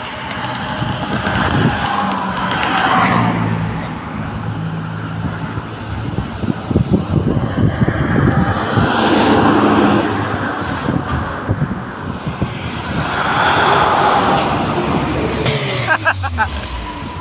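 Highway traffic passing at speed: tyre and engine noise swelling and fading as vehicles go by, about three passes, with a low engine drone in the first few seconds.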